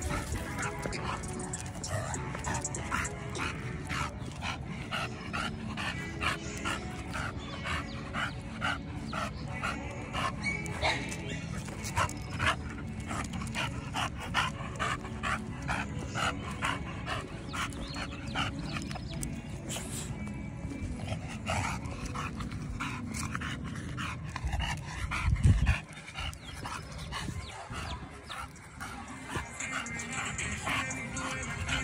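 Exotic bully dog panting, with music playing throughout. A brief loud low thump comes near the end.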